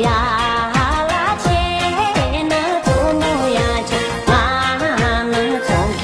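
A modern Tibetan pop song: a singer's voice with vibrato over a steady beat with deep bass notes that slide down in pitch.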